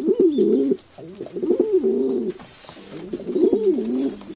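Low cooing bird calls in three runs of wavering, rising-and-falling notes.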